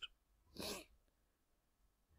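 Near silence with one short, soft intake of breath about half a second in.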